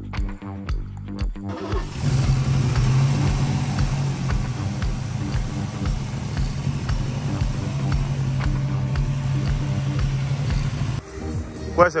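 Classic Ford Mustang's engine running steadily, a loud continuous drone, over a music track with a steady beat. The engine sound stops about a second before the end, where a voice begins.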